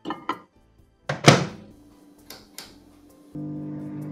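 Countertop microwave oven door shut with a single loud thunk, followed by a couple of faint button ticks. About three seconds in, the oven starts and runs with a steady low hum while it heats the chocolate in a short burst.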